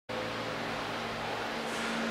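Steady mechanical hum of a large wall-mounted ventilation fan running, with a faint low tone held throughout.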